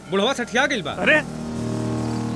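Film dialogue: a man speaking for about a second, then a low held background-music drone begins about one and a half seconds in.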